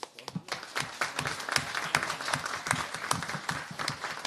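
Audience applause: a few scattered claps at first, swelling about half a second in into steady clapping by many hands.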